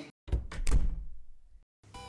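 A heavy, deep thump about a third of a second in, followed by two or three lighter knocks that die away within about a second.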